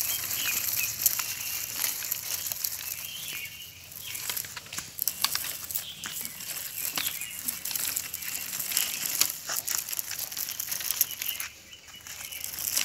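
Gritty crunching and crackling from a plastic baby walker's small wheels and frame moving over dry, sandy ground: a dense run of small clicks and scraping with no pauses.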